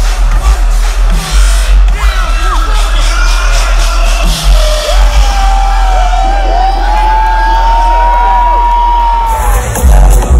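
Electronic dance music playing loud through a festival sound system, with a heavy pulsing bass and a crowd cheering and whooping. From about halfway a long held high tone runs, with rising and falling whoops around it.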